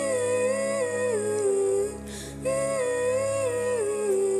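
A woman singing a slow melody into a microphone over a soft, sustained accompaniment. Two matching phrases, each stepping down in pitch at its end, with a breath between them about two seconds in.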